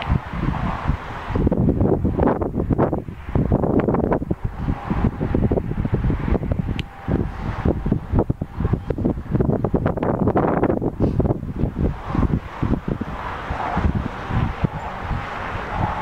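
Wind buffeting the microphone in irregular gusts, a rumbling noise that swells and drops throughout.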